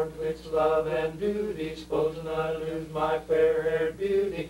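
Male barbershop quartet singing a cappella in close four-part harmony, holding slow chords in short phrases with brief breaths between them.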